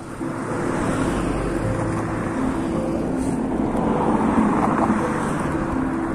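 Road traffic: a motor vehicle driving past close by, its engine and tyre noise swelling to the loudest point about four to five seconds in.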